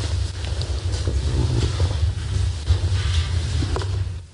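A woman crying close to a microphone, her breath blowing on it as a rough low rumble, with a brief higher sound near the end.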